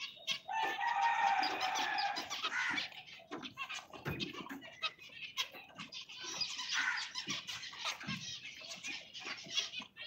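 A flock of zebra finches chirping and calling together, a busy chatter of short high calls. About half a second in, one louder, steady-pitched call is held for about two seconds.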